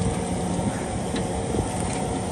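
New Holland compact track loader's diesel engine running steadily, with a faint click about a second in.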